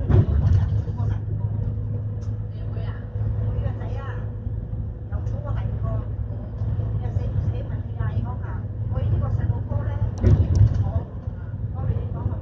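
A bus's engine and road noise drone steadily inside the cabin while people talk in the background. There are two louder low rumbles, one at the start and one about ten seconds in.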